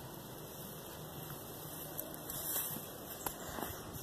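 Faint steady background noise with a couple of brief clicks, about two seconds and just over three seconds in.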